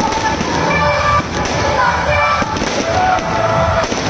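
Fireworks going off in a few sharp bangs over loud amplified music from decorated parade vans.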